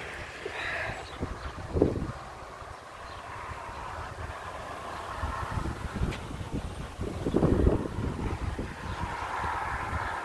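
Wind buffeting the microphone in irregular low rumbling gusts, loudest about two seconds in and again between seven and eight seconds.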